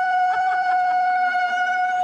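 A woman ululating (zaghrouta) in celebration: one long, loud, high call held on a steady pitch, dropping away at the end.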